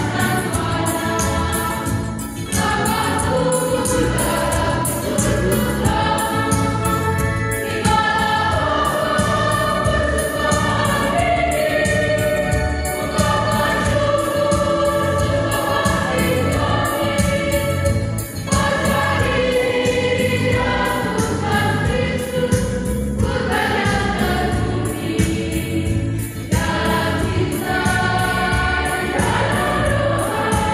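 A mixed church choir of men and women singing a hymn in harmony over a steady beat, in phrases with short breaks every few seconds.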